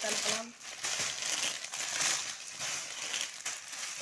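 Clear plastic packaging crinkling and rustling as plastic-wrapped sarees are handled and shifted, an uneven continuous crackle. A voice trails off in the first half second.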